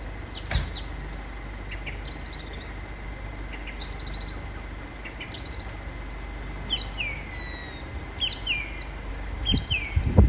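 Small songbirds singing and calling: quick high chirping and trilling phrases repeated every second or so, then a run of slurred falling whistles in the second half, over a steady low background rumble.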